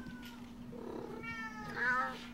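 Domestic cats meowing: a faint meow trailing off at the start, then a longer, louder meow that rises toward the end. A steady low hum runs underneath.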